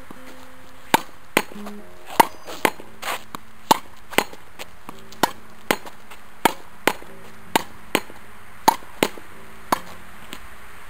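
Tennis ball struck with rackets and rebounding off a concrete practice wall in a steady rally: sharp knocks, mostly in pairs about half a second apart, a little over one pair a second.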